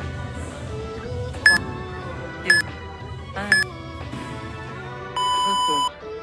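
Interval timer countdown over background music: three short beeps about a second apart, then one long, lower beep near the end. This marks the end of a 20-second work interval.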